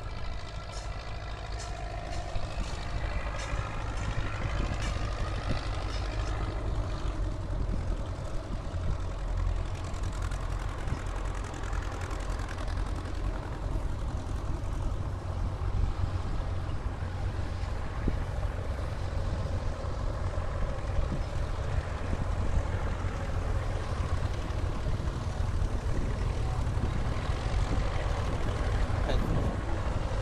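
Engines of a line of tractors driving past one after another on a road, a steady low rumble with no break.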